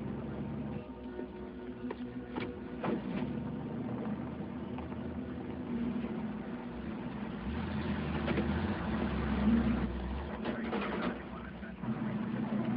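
A vehicle engine running steadily, its low rumble swelling for a couple of seconds past the middle, with a few faint knocks.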